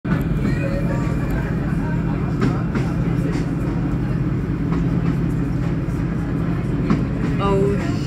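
Steady low mechanical drone with an even hum, like a vehicle or train running, throughout. A person's voice is heard briefly near the start and again just before the end.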